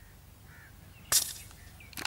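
A single gunshot about a second in: one sharp crack with a short fading tail, a hunter's shot at a dove on a power line. A bird calls faintly just before it.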